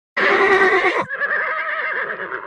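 A horse whinnying: a loud first call of about a second, then a quavering, wavering second part at a lower level.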